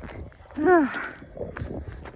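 A person's short wordless vocal sound, its pitch rising then falling, followed by a breathy exhale: the sigh of someone out of breath after a laborious climb.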